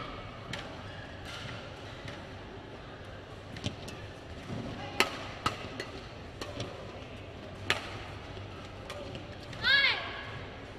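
Badminton rally: a string of sharp cracks as rackets strike the shuttlecock, the loudest about halfway through, over a steady hall background. Near the end there is a short squeal, typical of court shoes on the floor.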